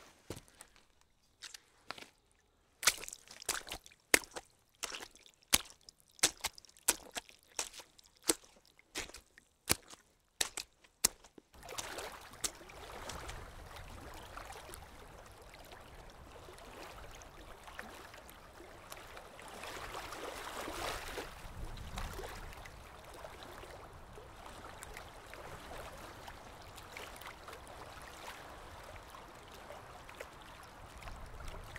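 Footsteps on leaf litter, a series of crisp irregular steps, then after about twelve seconds the steady rush of spring water spilling over stones at the source of the Sèvre Niortaise.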